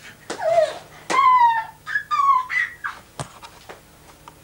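High-pitched whining cries: three short ones, each sliding down in pitch, the loudest about a second in. Sharp knocks come between them.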